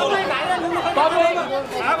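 Several men talking over one another in a crowd, in a heated exchange.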